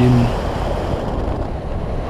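Airflow buffeting the wing-mounted camera's microphone on a hang glider in flight: a steady, loud, low rushing with fluttering.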